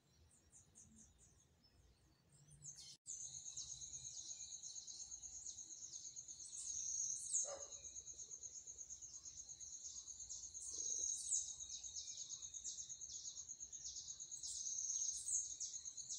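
High-pitched chirping of birds and insects: a dense, rapidly pulsing trill with sharper chirps over it. It starts abruptly about three seconds in, after a nearly silent start.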